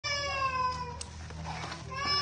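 A long, high-pitched wailing call that slides slowly down in pitch over about the first second, with a sharp click about halfway through.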